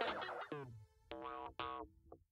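Background music ending: a playful tune fades, then a few short notes that each slide down in pitch, like a cartoon boing, and it stops.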